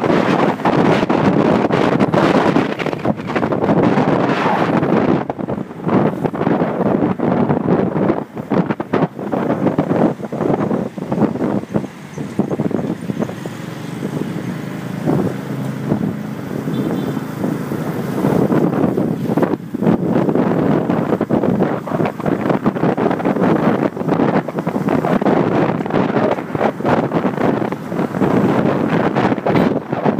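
Wind buffeting the microphone of a camera carried on a moving motorcycle taxi, mixed with the motorcycle's running and road traffic. The buffeting eases for a few seconds in the middle, then returns.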